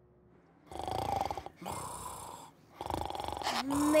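Cartoon character snoring: three breaths in a row after a short quiet, with a brief laugh at the very end.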